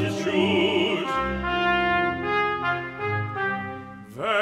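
Opera music from an orchestral score. A singer's wavering held note ends about a second in, and brass-like instruments then carry on in steady held chords that change every half second or so.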